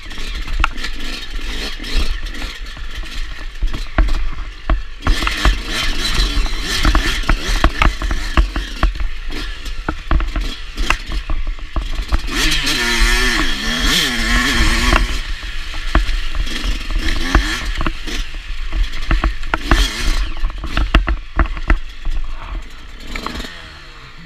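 Enduro dirt bike engine running and revving as it is ridden over a muddy, rutted trail, with constant clattering and knocks from the bumps and wind rumble on the microphone. The engine revs up and down most clearly about halfway through, and everything quietens near the end.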